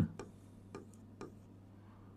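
A few faint, sharp taps of a pen on an interactive whiteboard screen while a diagram is drawn, about half a second apart, over a low steady hum.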